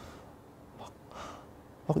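A quiet pause in conversation: a man's short intake of breath about a second in, over low room tone.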